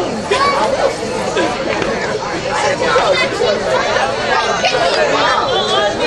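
Several people talking over one another close by: crowd chatter from spectators, with no single voice standing out.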